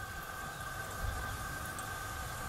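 Faint steady mechanical hum: a low rumble with a few steady high tones held level throughout.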